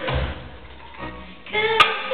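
Darbuka (goblet drum) played live in an ensemble: a deep stroke at the start, a short lull, then one sharp, bright slap near the end over a held melodic note.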